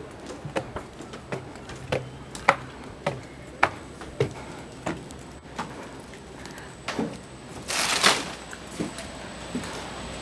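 Footsteps on wooden stairs and decking, sharp knocks about two a second for the first five seconds, then sparser. A short rustling burst comes about eight seconds in.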